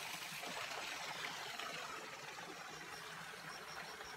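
Faint, steady rush of water running into a swimming pool.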